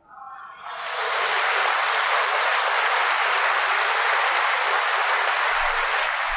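An audience applauding. The clapping builds over the first second and then holds steady.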